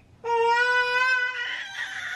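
Toddler crying: one long wail held at a steady pitch, breaking into a breathier, sobbing sound about a second and a half in.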